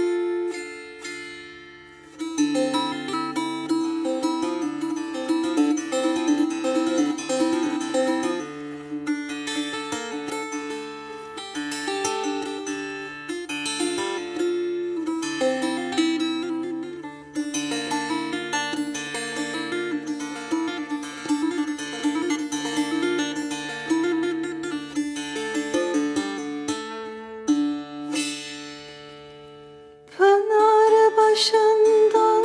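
Solo ruzba, a small long-necked saz of the bağlama family, plucked with the bare fingers in şelpe technique: a quick rhythmic melody ringing over open drone strings. It is the instrumental introduction of a folk song, with a brief break about two seconds in and a fade just before the voice enters.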